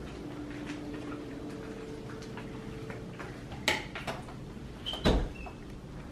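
A closet door being opened: a sharp knock about three and a half seconds in, then a heavier thump about five seconds in, over a faint steady hum.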